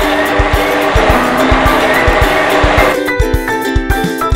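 Children's background music with a steady beat, with a rushing vehicle sound effect laid over it that cuts off suddenly about three seconds in.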